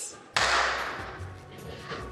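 A sudden crash-like hit about a third of a second in, fading out over about a second and a half, over a background music bed.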